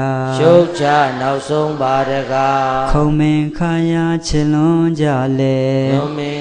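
A man's voice chanting a Buddhist recitation in long, held, melodic notes that step between pitches, phrase after phrase with brief pauses.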